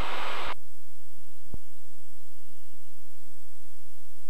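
Steady low drone of the Cirrus SR20's engine and propeller in the cabin, heard through the aircraft intercom. It opens with a burst of radio hiss that cuts off about half a second in, and there is a single short click a little later.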